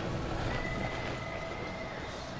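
Horse's hoofbeats on the soft dirt of an arena as it lopes. From about half a second in, a single steady high tone is held for more than a second.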